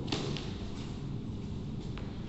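Two soft knocks close together near the start and a faint one near the end, from two people stepping and striking in a training-knife drill on a gym floor, over quiet room noise.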